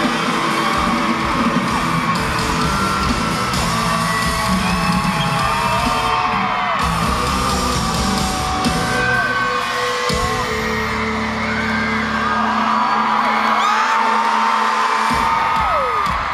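Live band with electric guitar playing the close of a pop-rock song in an arena, under constant high-pitched screaming and whooping from the crowd. A low held sound from the band cuts off sharply near the end.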